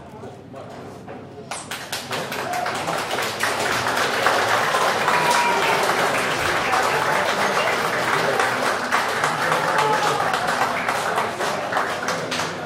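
Audience applause with crowd voices, starting about a second and a half in and building to a steady level.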